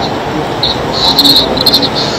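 Short bursts of high-pitched insect chirping, three in the second half, over a loud steady background hiss.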